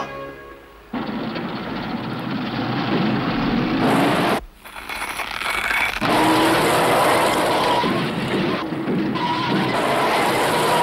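Cartoon sound effect of a car engine running hard and a tyre spinning in dirt, the car straining against a tow rope, over background music. The noise drops away briefly about four and a half seconds in, then resumes.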